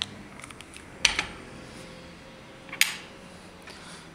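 A few short, sharp clicks and taps of small objects being handled and set down: a ring placed on a stone testing block and an acid bottle moved on the tabletop. They come at the start, about a second in and near three seconds, over a faint steady hum.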